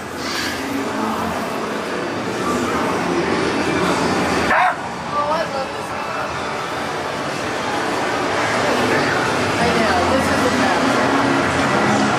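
A dog barking, yipping and whimpering over voices and a dense noisy background, with one short loud hiss about four and a half seconds in.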